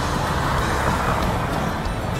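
Road traffic noise, a steady rush of passing cars that swells briefly about a second in, with background music underneath.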